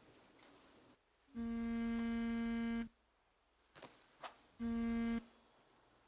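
A mobile phone buzzing on vibrate: one long buzz of about a second and a half, then a shorter buzz that cuts off suddenly, the call being answered.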